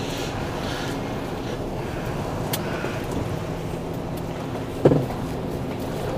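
Diesel engine of a tipper lorry running steadily at low revs, heard from inside the cab while the truck creeps round a turn. A brief thump comes about five seconds in.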